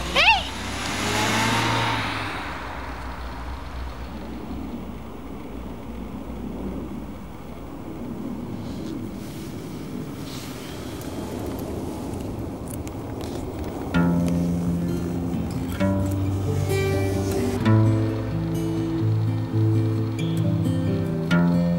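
A car driving off, its engine and tyres fading over the first couple of seconds, then a low steady drone. About fourteen seconds in, soundtrack music of plucked notes begins.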